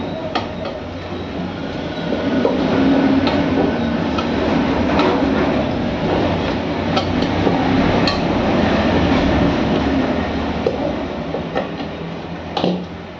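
A steel tyre lever clinks and scrapes against the steel rim of a small rickshaw wheel in scattered sharp strikes as the tyre bead is levered off. Behind it, a loud steady rumble runs throughout.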